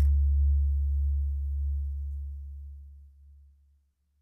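A single low, steady electronic bass tone, the last held note of a folktronica song, fading out evenly over about three and a half seconds.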